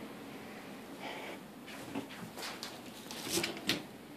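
Quiet room tone with a few faint, scattered taps and rustles, a little more of them near the end.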